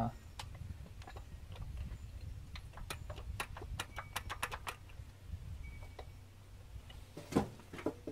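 Scattered light clicks and taps of metal carburetor parts as a Holley float bowl is pushed back into place and handled, over a steady low hum.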